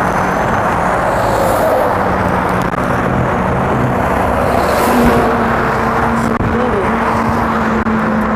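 Busy road traffic: cars and a truck passing close by without a break, with a steady engine hum under the tyre noise.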